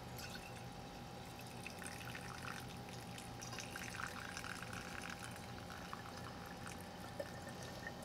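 Liquid pouring in a thin stream through a cheesecloth-lined plastic funnel into a glass quart mason jar: a faint, steady trickle.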